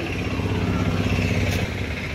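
A car engine running at low revs close by, a steady low hum that fades near the end.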